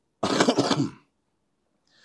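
A man clearing his throat: one short, rough cough-like burst lasting under a second, then a faint breath in near the end.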